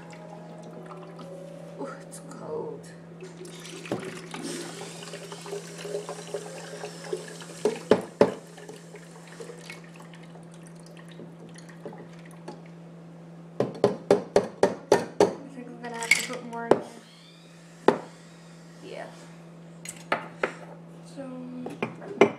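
Iced coffee poured from a metal cocktail shaker full of ice into a plastic cup: a trickle of liquid for a few seconds, then ice clinking against the metal, a quick run of about ten clinks midway and a few single knocks after.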